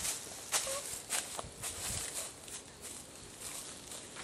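Footsteps and rustling through grass and undergrowth, a scattering of short, irregular crunches and brushing noises.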